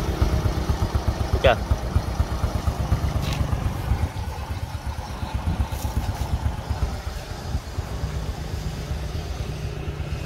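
Honda Wave 110's four-stroke single-cylinder engine idling steadily, its exhaust putting out an even, low beat; it eases a little softer about four seconds in.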